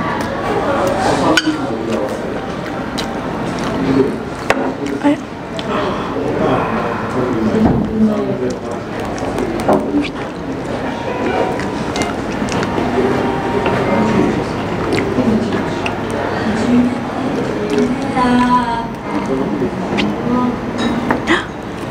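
Indistinct voices of people talking, with sharp clinks of a metal spoon and chopsticks against dishes now and then.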